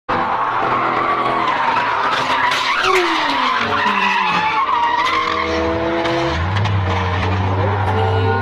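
Tyres squealing as a Mercedes-Benz E-Class estate skids and spins, the squeal wavering for the first five seconds while the engine note falls away. From about six seconds in, the engine holds a steady low note as the car slides off the track.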